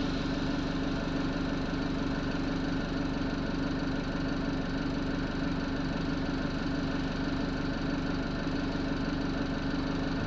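Alexander Dennis Enviro200 single-deck bus engine running steadily, an even hum with a low drone, heard from inside the passenger saloon.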